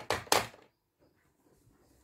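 Two brief rustling handling noises close to the microphone in the first half-second, then near silence.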